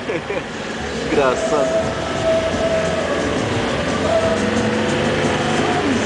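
Mitsubishi L200 pickup driving on a sandy dune track, its engine and drivetrain running under load. The noise grows louder about a second in and holds with a steady whine. A short laugh comes at the start.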